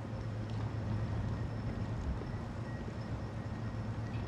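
A steady low hum over an even background hiss, with no clear single event.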